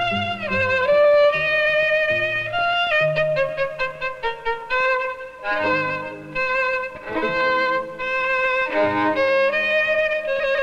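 Closing music: a violin playing a melody with notes that slide from one pitch to the next, over lower accompanying notes.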